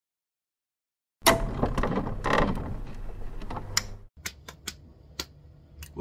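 Mechanical clicking and clatter that start about a second in and cut off abruptly about four seconds in, followed by a few separate quieter clicks.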